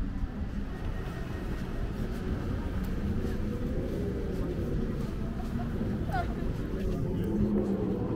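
City street ambience: a steady low traffic rumble with people talking among the passers-by, the voices more noticeable in the second half.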